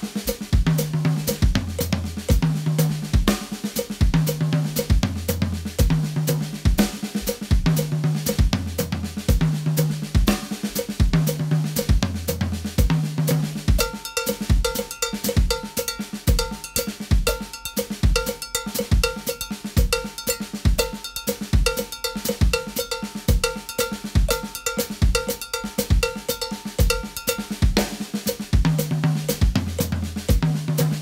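Drum kit playing a seven-against-four independence pattern at 120 beats per minute: the left foot plays groupings of seven against a quarter-note pulse while the hands move around the kit. Low toms carry a repeating figure in the first half; from about halfway a high, ringing metal bell pattern takes over, and the tom figure comes back a few seconds before the end.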